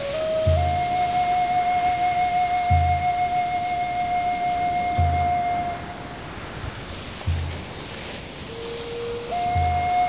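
Native American flute holding one long, steady note over a deep drum beat that falls about every two seconds, with a steady hiss beneath. The flute stops a little past the middle, plays a short lower note near the end, then takes up the long note again.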